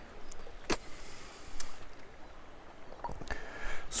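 A few short sharp clicks and knocks over a faint steady hiss, the loudest about a second in: a whisky glass and a plastic water bottle being handled and set down on a stone wall.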